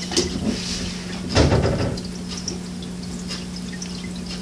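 Small Meccano parts being handled and a bolt being screwed in on a tabletop: faint scattered clicks over a steady low hum, with a thump about one and a half seconds in.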